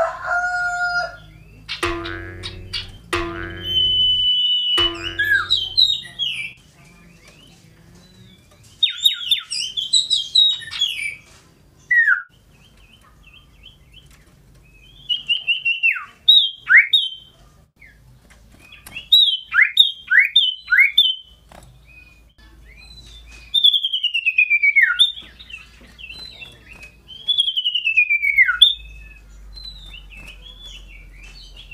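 Caged common iora (cipoh) singing shrilly: high whistled notes that sweep down in pitch, given in short bursts every few seconds. Near the start, three louder, lower and harsher calls of about a second each come from another bird.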